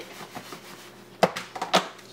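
A plastic food container set down on a kitchen counter: one sharp knock a little past halfway, then a few lighter clicks and knocks as it is handled.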